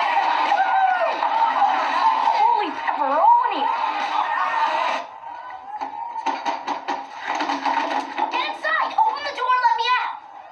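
Film soundtrack voices: a crowd of party-goers talking and shouting over one another, then a sudden drop in level about five seconds in and a boy speaking.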